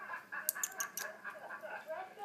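Kitten mewing in a run of short, high, broken calls, with a few sharp clicks about a quarter of the way in.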